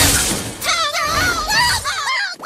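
Cartoon impact effect: a loud crashing, shattering burst at the start. About half a second in come wavering high-pitched cartoon voice cries, over background music.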